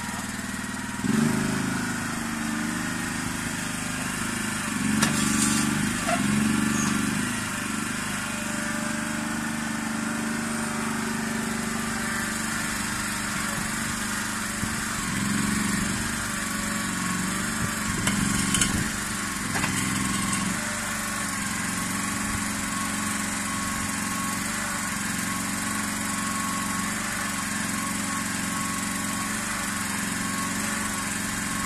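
Komatsu PC01 mini excavator's small engine running steadily while the boom and bucket are worked, briefly louder a few times.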